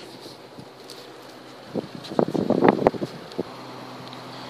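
Steady wind on the microphone, with a second or so of irregular knocks and rustling from handling about two seconds in.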